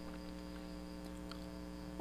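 Steady electrical mains hum, a low buzz that holds an even pitch and loudness, over faint background hiss.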